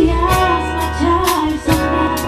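A woman singing a Batak pop love song with a live band of acoustic guitar, keyboard, electric bass and drum kit. The sung line slides between notes over steady drum hits and sustained bass.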